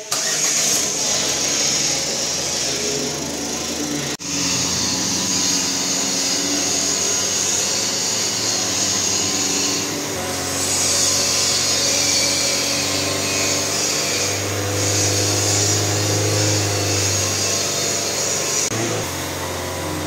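Ford Courier diesel engine starting and then running steadily. Its note grows stronger through the middle and settles again near the end, while the rinse fluid sprayed into the diesel particulate filter burns off as thick exhaust smoke.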